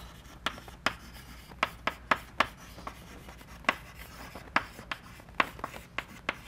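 Chalk writing on a blackboard: an irregular string of sharp taps and short scrapes as the letters are written.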